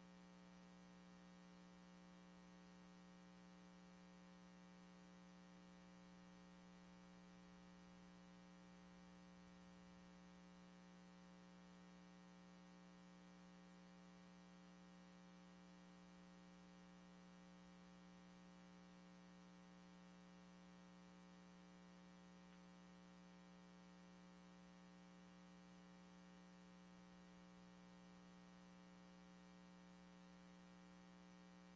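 Near silence: a faint, steady hum with a thin high whine and hiss, unchanging throughout.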